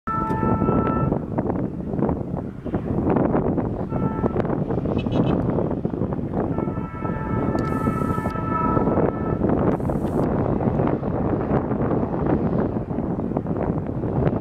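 A WDM-3A diesel locomotive's multi-tone horn sounds three times: a one-second blast, a short toot, then a longer blast of about two and a half seconds. The blasts ride over a heavy rush of wind on the microphone and the locomotive working hard up a gradient.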